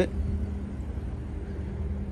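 A steady low mechanical hum, with even, faint background noise above it.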